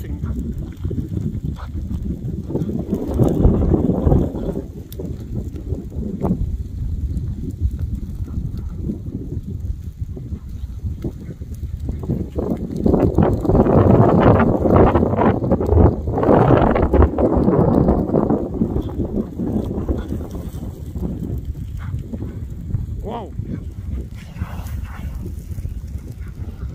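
Moss and grass burning at the edge of an advancing lava flow: a rushing fire sound with crackling and snapping. It swells loudest a little past the middle.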